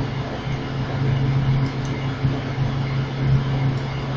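Steady low electrical hum with an even hiss above it: the background noise of a home desktop recording setup.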